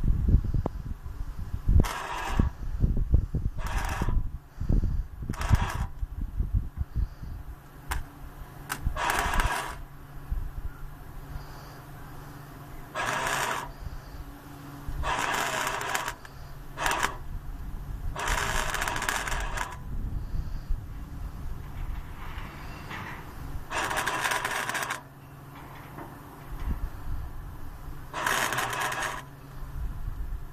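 Electric arc welding in short runs: about ten separate bursts of arc crackle, each from a fraction of a second to about a second and a half long, with pauses between. A steady low hum runs underneath through most of it.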